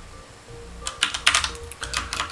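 Typing on a computer keyboard: after a near-quiet first second, a quick run of keystrokes.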